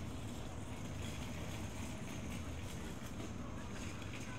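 Steady city street ambience: a low rumble of passing traffic with faint voices of passers-by.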